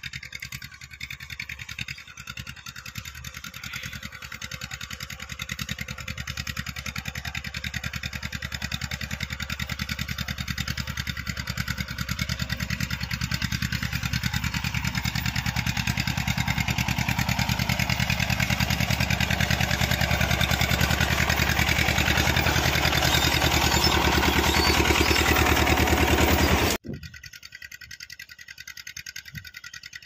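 Massey Ferguson tractor's diesel engine running steadily as the tractor drives toward the listener, growing gradually louder as it comes closer. Near the end the sound drops abruptly to a much fainter engine sound from far away.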